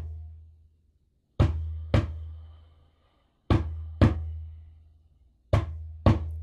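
Small djembe played in a heartbeat rhythm: paired strokes about half a second apart, a pair every two seconds or so, three times.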